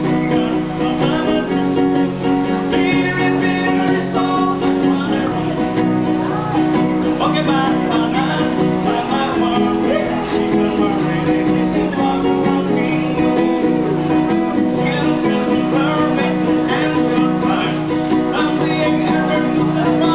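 Live acoustic guitar strummed steadily, with a man singing along.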